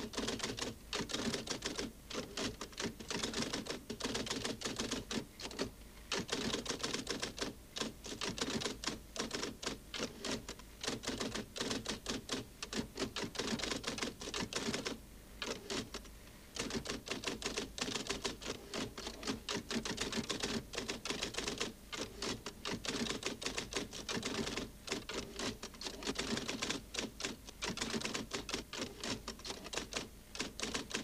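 Rapid typewriter typing: a dense run of key clicks with brief breaks, and one pause of about a second and a half near the middle.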